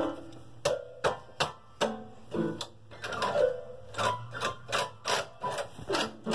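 Rhythmic clicking taps, about two or three a second and a little uneven, with short pitched notes sounding between them like a makeshift tune.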